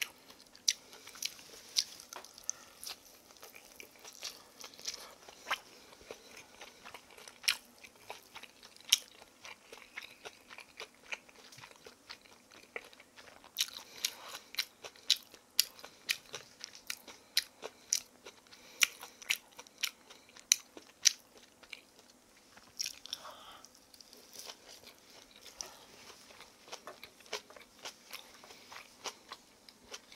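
Close-up chewing of crispy pan-fried kimchi pancake (kimchijeon): many irregular sharp crunches of the crisp fried batter, growing sparser for the last several seconds.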